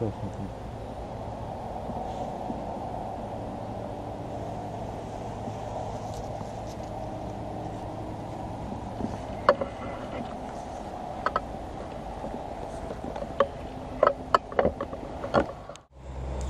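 Steady outdoor background noise, then from about nine seconds in a scatter of sharp clicks and light metallic jingles: small bite bells on feeder rod tips ringing as a fish tugs the line and the rods are handled.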